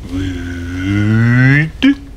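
A man drawing out a long, low "ooo" vowel, the word "would" stretched in a pronunciation drill. Its pitch rises slowly, so it sounds like a moo, and a woman's voice is held alongside it. A short clipped syllable comes near the end.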